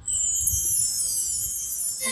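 Opening of a music backing track through a PA: a high shimmering sweep that starts suddenly and falls steadily in pitch over about two seconds, leading into the song's intro.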